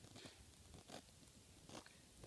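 Near silence: faint room tone with three soft clicks or rustles, spread through the two seconds.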